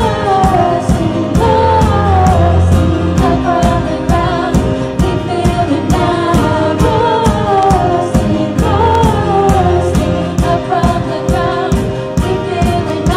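Live worship band playing a song: a woman's voice sings the melody over piano and keyboard chords, with a steady drum beat about twice a second.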